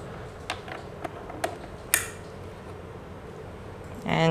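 A few small, sharp plastic clicks and knocks as an ethernet cable's RJ45 plug is pushed into a wireless access point and the plastic unit is handled. The last click, about two seconds in, is the loudest.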